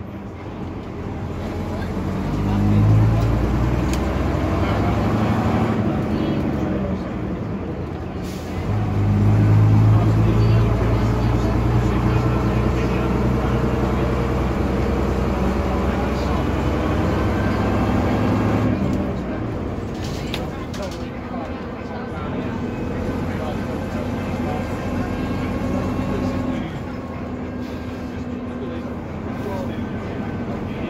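Inside a Bristol RE bus, its rear-mounted Gardner six-cylinder diesel pulls hard and rises in pitch through the gears, with a break and a fresh climb about eight seconds in. About two-thirds of the way through it eases off to a lower, quieter running note.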